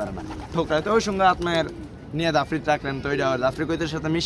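Domestic pigeons cooing in their loft cages, heard beneath a man talking.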